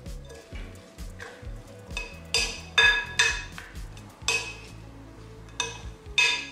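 A wooden spoon tossing salad in a glass mixing bowl, knocking against the glass with several sharp, ringing clinks, the loudest in the middle. Background music plays underneath.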